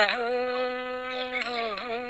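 A folk singer's voice holding one long, steady sung note with a nasal, buzzing quality, dipping briefly in pitch near the end.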